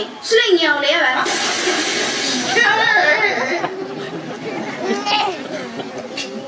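Actors' voices speaking lines in a stage play. A loud burst of hiss joins them from about one second in and lasts about a second and a half.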